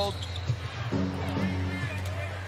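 Basketball bouncing on a hardwood court over arena music, which holds a steady chord from about a second in, above a low steady arena hum.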